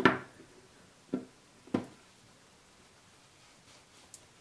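Short plastic clicks from handling a plastic e-liquid dropper bottle and its cap: a sharp click right at the start, then two softer ones a little over a second in and just under two seconds in.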